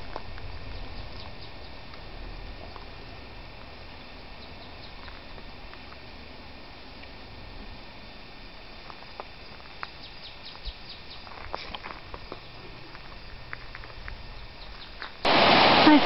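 Quiet outdoor ambience beside a calm, slow-moving brook, with a few faint clicks. About a second before the end it cuts suddenly to the loud, steady rush of a rocky cascading waterfall.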